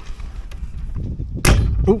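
A single sharp click as a quick-grip bar clamp is fitted to the boat's metal keel band, about one and a half seconds in, over a low background rumble.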